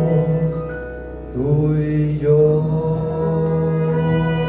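Male vocalist singing with orchestral accompaniment: a held note fades about a second in, then a new long note begins about a second and a half in and is held steadily.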